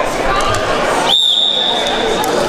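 Referee's whistle, one long steady blast starting about a second in, signalling the start of the wrestling bout, over crowd chatter in a sports hall.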